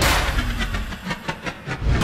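Trailer-style transition sound effects: a heavy hit dying away, then a rapid run of digital glitch clicks about ten a second, swelling back up at the end into the next hit.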